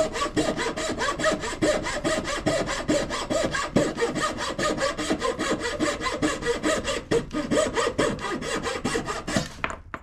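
Turning saw's thin blade cutting a curve through a wooden board, an even run of rasping strokes about five a second. The sawing stops shortly before the end as the cut goes through.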